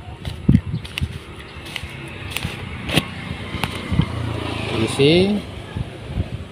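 Scattered sharp plastic clicks and knocks as a bottle of brake fluid is handled, opened and tipped over a motorcycle's open brake master-cylinder reservoir. Near the end comes a brief low hum with a short rising tone.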